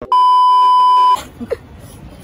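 A single loud, steady electronic beep at one pitch, lasting about a second, then cutting off to low background noise.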